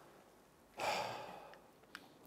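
A man's audible breath close to the microphone, under a second long, starting about a second in, then a faint click just before the end.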